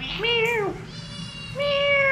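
A kitten meowing: two loud, arching meows about a second and a half apart, with a fainter call between them.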